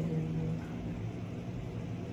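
A woman's voice trailing off on one drawn-out syllable, then a low, steady rumble of background noise.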